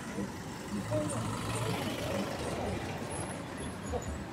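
Street traffic: a car and motorcycles running as they pass through an intersection, with a steady traffic noise and a low engine hum about a second in. People talk faintly in the background.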